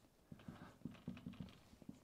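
Marker pen writing on a whiteboard: faint, irregular taps and strokes as the letters are written.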